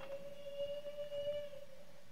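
A faint steady tone held through a pause in speech, with fainter high overtones that drop away near the end, over quiet room tone.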